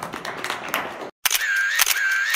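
Scattered claps and room noise, broken off by a brief gap, then a louder camera-shutter sound effect: clicks over a wavering high tone.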